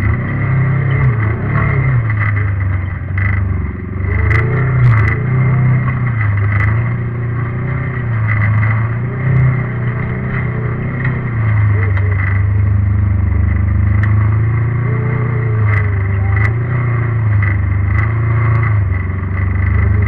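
Off-road vehicle engine running as it drives, its pitch rising and falling with the throttle, with occasional sharp clicks and knocks.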